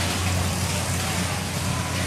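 Fairground ambience: a steady low machine hum under a constant wash of noise and faint distant voices.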